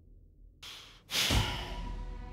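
A man's sigh: one breathy exhale about a second in that fades away.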